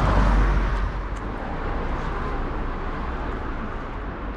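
Street traffic noise, loudest in about the first second and then steady, over a constant low rumble.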